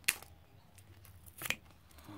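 Two sharp clicks, about a second and a half apart, as the plastic parts of a miniature locomotive model are handled.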